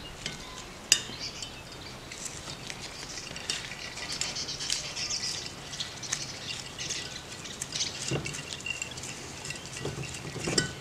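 Needle-nose pliers working a metering screw out of a Rochester Quadrajet carburetor's cast body: one sharp metal click about a second in, then a string of light metallic scrapes and clinks.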